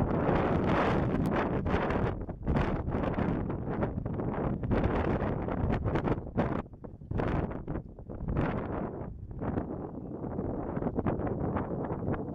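Wind gusting across the built-in microphone of a Canon SX50 camera: a low noise that swells and drops unevenly every second or so.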